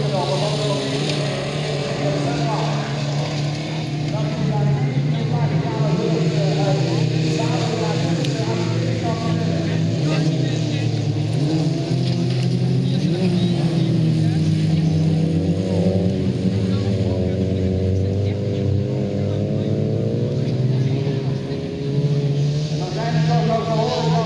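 Several small hatchback autocross cars racing together on a dirt track, their engines overlapping, revving and falling as they accelerate and lift between corners, with one long rising rev partway through.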